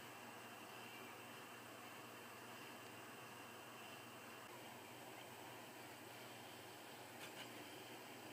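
Near silence: a faint steady hiss of room tone, with a couple of faint ticks near the end.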